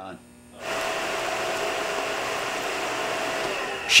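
Industrial machinery running: a steady whirring hum with a faint held tone in it, starting abruptly about half a second in.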